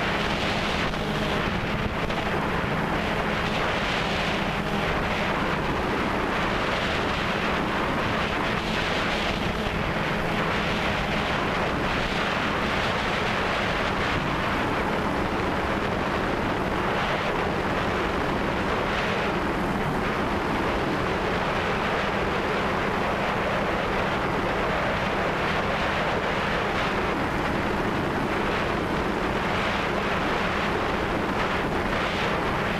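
DJI Phantom 2 quadcopter's four brushless motors and propellers humming steadily in flight, picked up by the GoPro mounted on it, with wind noise on the microphone.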